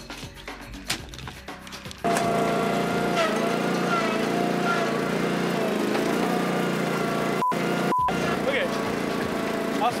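Hand digging in rocky, loose soil: a shovel scraping and clinking against stones. About two seconds in, the sound cuts to a compact tractor's engine running steadily.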